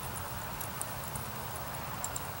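Outdoor field ambience: a steady low rumble with scattered faint high-pitched ticks, and no clear footfall rhythm.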